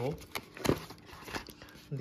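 A black cardboard box being handled and opened by hand: a few short rustles and sharp taps of card on card. The loudest comes about two-thirds of a second in.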